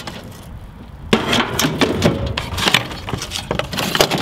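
Loose metal parts, a car jack and lug nuts, clinking and knocking as they are handled and moved about. There is a brief lull, then a run of rapid clinks starting about a second in.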